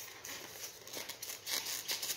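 A styrofoam box being turned and rubbed in the hands, a run of short scratchy rustles that grows busier near the end.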